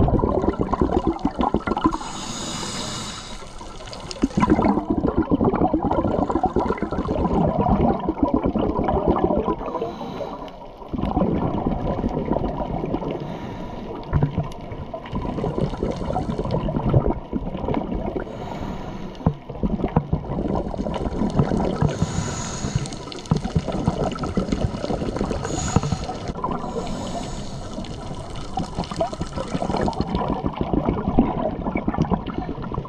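Scuba breathing heard underwater through a diving regulator: hissing inhalations alternating with bursts of bubbling, gurgling exhaled air, repeating every few seconds.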